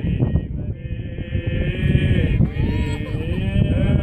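Byzantine chant of an Orthodox memorial service: a male voice holding long, slowly bending notes. Wind rumbles on the microphone throughout.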